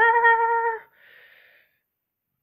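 A high-pitched voice holds one drawn-out vowel at a steady pitch for just under a second, ending a spoken line. A faint breath follows, then silence.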